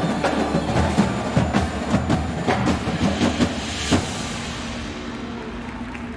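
Indoor marching percussion ensemble playing: battery drums and front-ensemble mallet keyboards strike a run of sharp accented hits for about four seconds, then ease into a softer passage of held notes.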